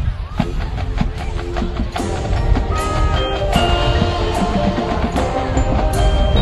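Marching band music led by the front ensemble's mallet percussion and chimes, starting about half a second in: struck, ringing pitched notes that grow busier partway through.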